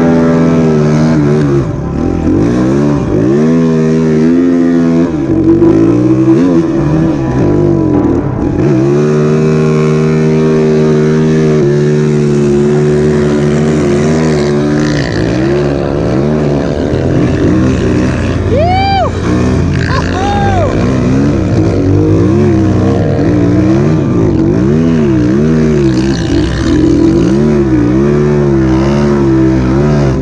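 2007 Yamaha YZ450F's 450 cc four-stroke single-cylinder engine, on a 2moto snowbike track conversion, revving up and down again and again under load in deep powder. About two-thirds of the way in, a higher engine note briefly rises and falls twice.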